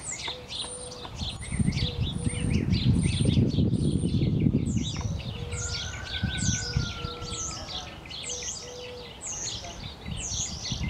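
Small birds chirping and singing throughout in quick high sweeping notes, with a lower short note repeated in pairs. A low rumbling noise, the loudest sound, swells for a few seconds around the middle.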